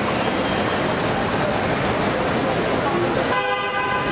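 A vehicle horn sounds once, a short blast of under a second near the end, over a steady din of crowd voices and traffic.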